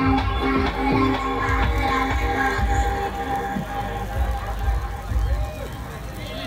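Live music from a stage sound system, with held steady tones over low bass pulses, getting quieter in the second half as crowd voices come through.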